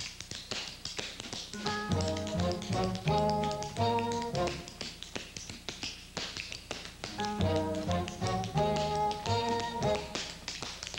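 Tap shoes striking a hard dance floor in rapid, continuous rhythmic patterns. A dance band comes in under the taps with two phrases of chords and bass, in the first half and again near the end, with taps alone between them.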